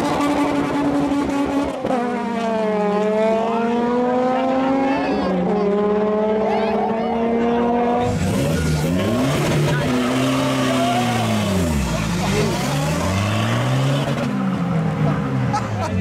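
Car engines revving at a drag-race start line, their pitch climbing and dropping over and over. About halfway through, an engine is revved up and down in repeated swells.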